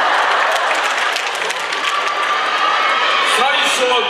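Theatre audience applauding and cheering, a dense clatter of clapping, with a man's voice rising over it near the end.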